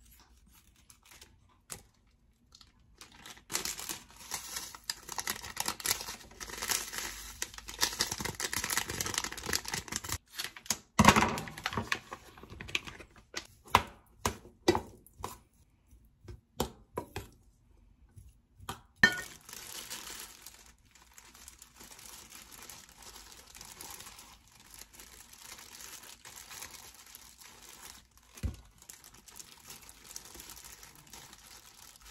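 Kitchen prep: a plastic seasoning packet crinkling and tearing as it is cut open and emptied, then a metal spoon knocking and scraping in a stainless steel bowl of rice, with a run of sharp clicks and knocks. Near the end, soft crinkling of disposable plastic gloves handling the rice.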